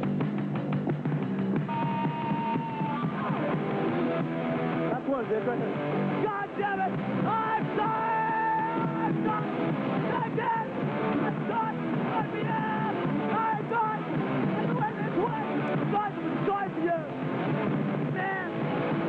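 Hardcore punk band playing a song live, loud and unbroken, with shouted vocals over the distorted guitars and drums.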